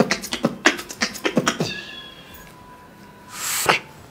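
Beatboxing: a fast run of mouth-made drum clicks and hits for the first second and a half, a quieter stretch with a faint thin tone, then a short hissing cymbal-like sound near the end.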